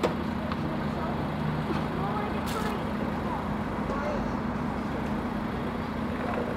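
A minibus engine idling with a steady low hum, with faint chatter of children's voices over it.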